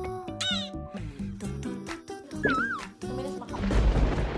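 Comic cat-meow sound effects over light background music, with a falling meow about half a second in and a wavering one about two and a half seconds in. A rushing noise with a low thud builds near the end.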